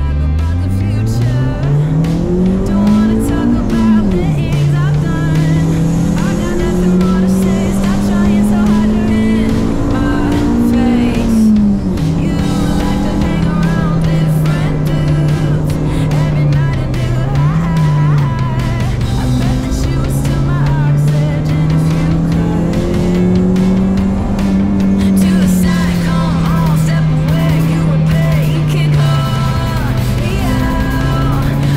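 Honda Brio's 1.2-litre four-cylinder engine under hard acceleration on a lap, heard from inside the cabin: the revs climb steeply from low, drop sharply at a gear change about four seconds in, climb again and drop near the middle, then rise and fall as the car is driven through the corners.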